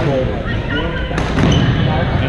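Badminton racket striking a shuttlecock once, a sharp hit about a second in, during a rally in a large gym, over a steady background of players' voices echoing around the hall.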